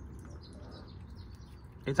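Quiet outdoor background with faint, scattered bird chirps.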